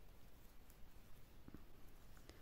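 Near silence: room tone, with one faint short tick about one and a half seconds in.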